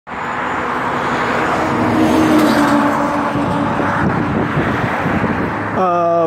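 Road traffic going by, a loud steady rush of tyres and engines with an engine hum standing out in the middle. A man's voice starts right at the end.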